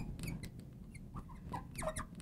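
Marker squeaking and tapping on a glass lightboard while words are written: a string of short squeaks and light ticks.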